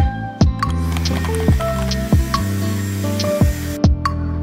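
Background music with a steady beat and bass. A hiss runs under it and cuts off suddenly near the end.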